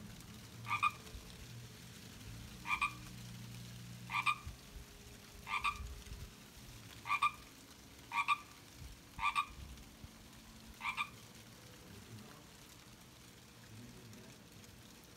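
A single frog croaking over and over, nine short two-part croaks spaced about one to two seconds apart.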